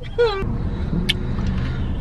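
Steady low rumble of a Honda car's engine and road noise heard inside the cabin, with a brief vocal sound at the start and a short high click about a second in.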